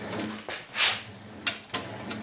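Craftsman 12-inch radial arm saw being handled while it is not running, as the blade height is adjusted: a short sliding scrape about a second in, then two sharp clicks.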